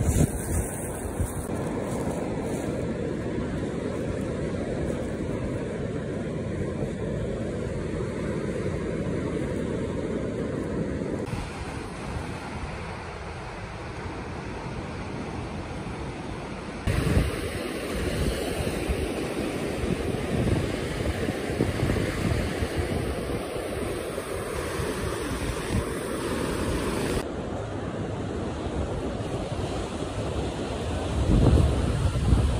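Surf breaking on a sandy beach, a steady wash of waves, with wind buffeting the microphone in gusts. The background changes abruptly a few times as the shots cut.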